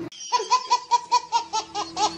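A baby laughing hard: a quick run of high-pitched laughs, about five a second.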